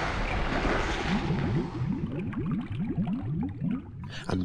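Cartoon water sound effect: a rushing splash-like noise fades away, then a rapid run of bubbling gurgles, each rising quickly in pitch.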